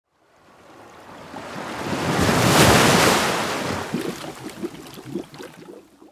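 An intro whoosh sound effect: a rush of noise like a breaking wave swells up over about two and a half seconds, then dies away into a string of short, low pops.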